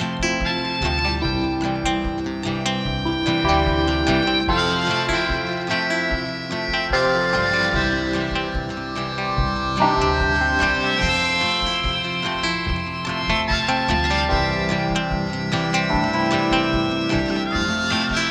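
Live band playing an instrumental break led by a harmonica played into the vocal mic, over acoustic guitar, upright bass, keyboard and drums.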